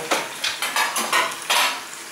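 Metal pots, lids and utensils clattering as they are handled on a kitchen worktop: a quick run of clinks and knocks, the loudest about one and a half seconds in.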